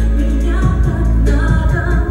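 A woman singing a pop song into a microphone, with accompaniment that has a heavy bass.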